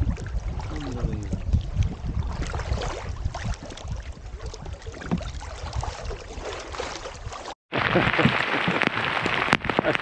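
Wind rumbling on the microphone over water splashing and lapping against an open canoe on choppy lake water. After a sudden cut about seven and a half seconds in, heavy rain hits the water and the canoe in a loud, steady hiss.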